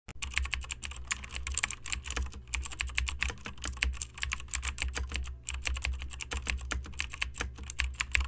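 Rapid, irregular clicking like typing on a computer keyboard, several clicks a second over a low hum, stopping abruptly just after the end.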